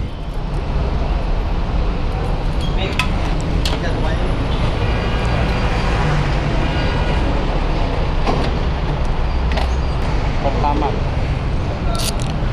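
Steady low engine and traffic rumble at a busy fuel station, with a few faint clicks and distant voices.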